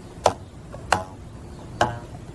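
Rubber bands stretched over an open cardboard box, a homemade lyre, plucked one at a time: three plucks well under a second apart, each a short pitched note that fades quickly. The bands are being checked for pitch, tightened if too deep and loosened if too high.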